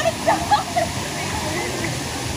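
Pool water splashing over a steady rush of running water, with short high-pitched voices of children playing in the first second.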